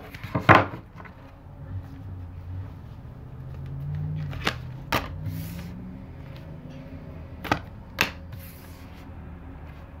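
Tarot cards being handled and laid down on a tabletop: a few sharp taps of cards against the table, one shortly after the start, then two close pairs in the middle and later on.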